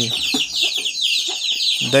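A brood of young chicks peeping without a break: many high, short, downward-sliding cheeps overlapping in quick succession.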